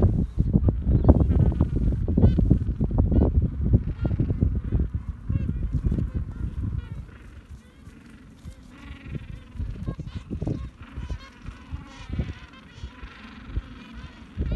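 Birds calling with honking cries, over a heavy rumble of wind on the microphone in the first four or five seconds that then dies down.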